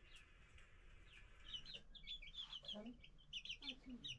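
A hen and young chickens cheeping, with short, high chirps in quick runs starting about a second and a half in, and a few low clucks.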